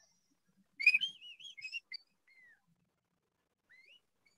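A man whistling an imitation of the spotted babbler's call: a quick warbling phrase about a second in, then two faint upward-sliding notes, the last near the end.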